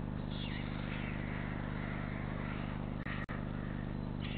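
Steady low electrical hum and hiss, with faint high chirps over it near the start and again about three seconds in. The sound cuts out twice, very briefly, about three seconds in.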